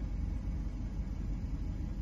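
Low, steady rumble of a Volkswagen Beetle's 1.2 turbo four-cylinder petrol engine idling, heard from inside the cabin.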